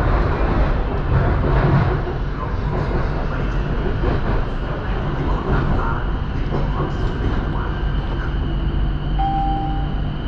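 BTS Skytrain car running along its elevated track, heard from inside the cabin as it nears a station: a steady rumble with a high, steady whine over it. A short tone sounds near the end.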